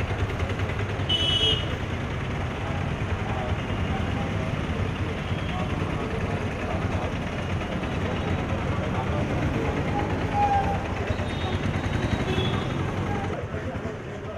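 Street traffic noise, a steady rumble of motor vehicles running. A brief high-pitched tone sounds about a second in.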